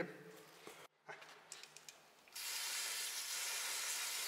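Aerosol brake-cleaner spray hissing steadily as it is sprayed onto a scooter's oil strainer to clean it, starting a little past halfway. A few faint handling clicks come before it.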